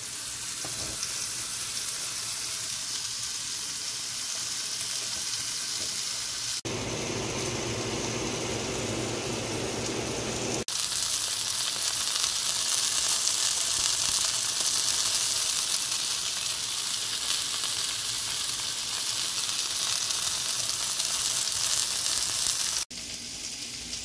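Smashed ground-beef patty sizzling in a hot cast-iron skillet: a steady, high hiss. The sound shifts abruptly about seven, eleven and twenty-three seconds in, and is quieter for the last second.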